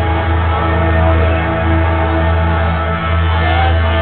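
Live band music played loud through a club PA, with a heavy, steady bass and held chords, recorded from within the audience, with some shouting from the crowd.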